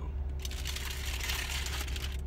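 Paper burrito wrapper rustling and crinkling as it is handled and set down, starting about half a second in, over a steady low hum.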